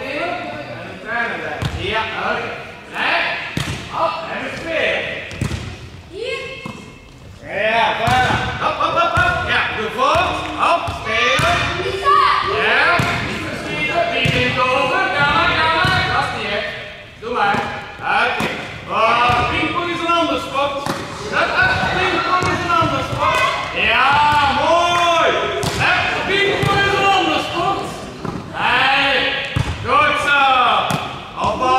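Several high-pitched young voices calling and shouting over one another throughout, echoing in a large sports hall, mixed with the sharp thuds of a volleyball being hit and bouncing on the floor.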